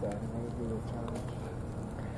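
Faint background talk of a few people murmuring, over a steady low rumble.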